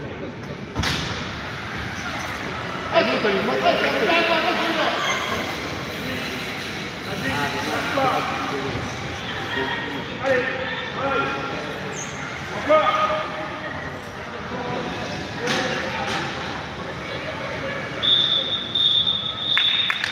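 Spectators' voices and chatter throughout, with a few sharp knocks, then near the end a single steady referee's whistle blast lasting about two seconds: the final whistle ending the powerchair football match.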